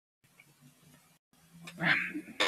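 Near silence, cutting out completely twice for a moment; near the end, a man's drawn-out breathy vocal sound, rising in pitch, leads back into talk.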